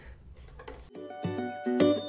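Quiet room tone for about the first second, then background music cuts in: a bright tune of short, separate notes over a bass line.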